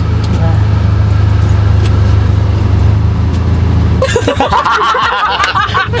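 Car engine idling, heard from inside the cabin as a steady low drone. It stops suddenly about four seconds in, and voices follow.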